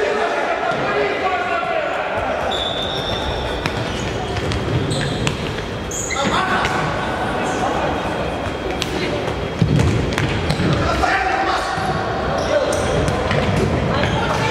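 Players calling out to each other in a reverberant sports hall, with the futsal ball knocking off feet and the wooden floor. There is a sharper knock a little over halfway through.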